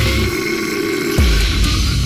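Slamming brutal death metal: the drums and bass drop out briefly under a held guitar note and a deep guttural vocal, then the full band comes crashing back in a little over a second in.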